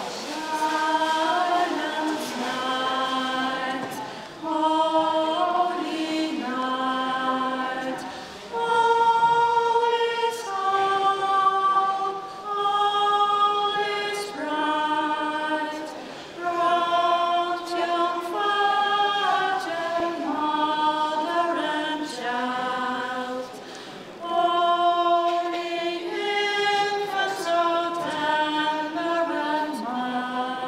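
A small group of women singing together a cappella in phrases about two seconds long, with several voices held at once.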